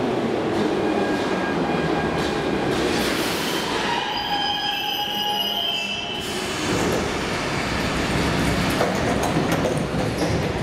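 81-717/714 metro train rolling into the platform and braking to a stop, its wheels and brakes giving a high squeal that is strongest just before it halts about six seconds in. The train then stands while its doors open.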